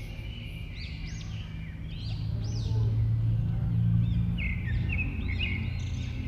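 Small birds chirping repeatedly, short rising-and-falling calls, over a low steady rumble that swells in the middle.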